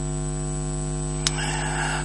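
Steady electrical mains hum with a stack of even overtones, with a single click a little over a second in followed by a faint hiss.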